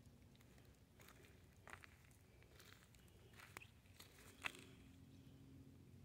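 Near silence with a few faint, scattered crunches, like light footsteps on dry mulch and soil.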